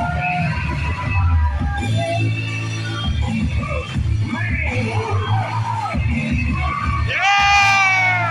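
Music with a steady bass line, under an indoor wrestling crowd yelling and cheering; one loud, drawn-out yell falling in pitch near the end.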